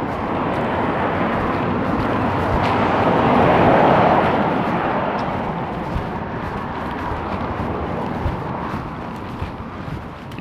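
A motor vehicle driving past: a steady rush of engine and tyre noise that grows to its loudest about four seconds in and then fades away.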